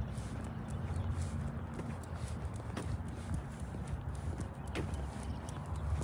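Walking footsteps on an asphalt path, a loose series of light steps over a steady low rumble.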